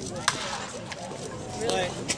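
A wooden baseball bat cracks once against a pitched ball, a single sharp hit about a third of a second in. Voices murmur in the stands behind it.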